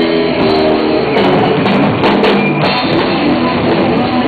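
Heavy metal band playing live, with electric guitars over a drum kit.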